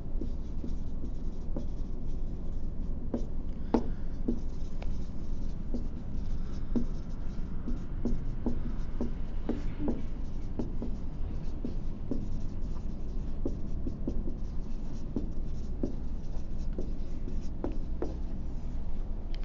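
Someone writing by hand on a board, heard as irregular light taps and strokes, over a steady low room hum.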